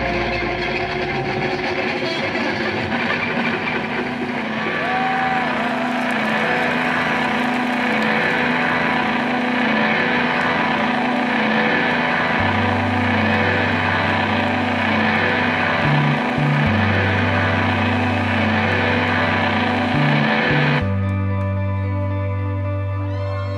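Electric guitars and bass played live by a rock band in a slow, droning instrumental passage without drums: held, sustained guitar tones. Low bass notes come in about halfway, shift briefly twice, and the high shimmer drops away near the end.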